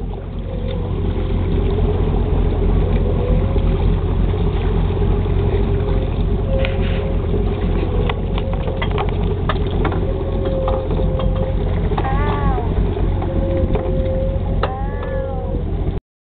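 Fishing boat's motor running steadily at trolling speed, with water noise, and scattered clicks and knocks in the middle.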